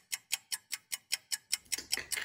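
Clock-style ticking, about five quick even ticks a second, as for a countdown timer.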